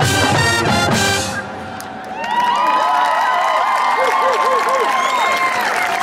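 A high school marching band's last loud hit of brass and drums, cutting off about a second and a half in, followed by the crowd cheering with rising and falling whoops.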